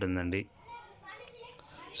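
Speech: a narrator's voice talking for about the first half second, then a pause filled only by faint, indistinct background sound.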